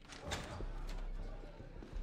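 A few sharp, separate knocks over a low steady hum.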